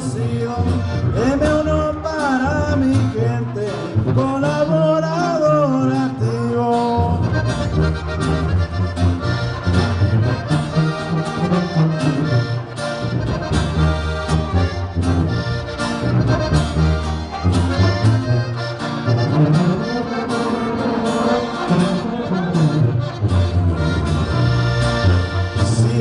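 Live norteño band playing an instrumental break in a corrido: the button accordion carries the melody over strummed guitar and a tuba bass line.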